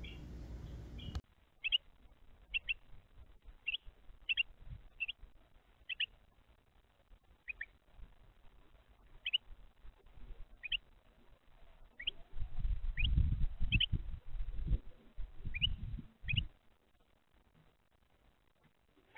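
Short, sharp bird chip calls, one every second or so, each a quick downward flick. Bursts of low knocking and scuffling between them later on, as a wren moves and pecks about on the plastic feeder tray right at the camera's microphone.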